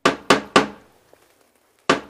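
Three sharp knocks on a door about a quarter second apart. A second round of knocking begins near the end.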